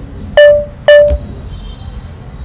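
Two short, loud electronic beeps from the computer, about half a second apart. Each is a single buzzy tone that starts sharply and dies away quickly, the kind of alert beep a terminal gives.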